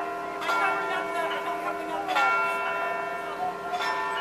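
A bell tolling: three strokes about a second and a half apart, each leaving a long ring of several steady tones that carries on between strokes.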